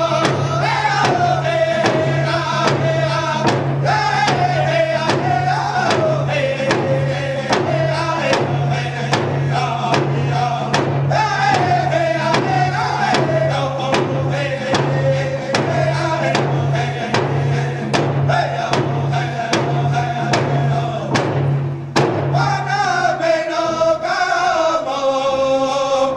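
A men's Native American hand drum group singing together in unison over a steady beat on hand drums, each phrase starting high and falling step by step. Near the end the drumming stops for a moment and the voices start a new phrase high again.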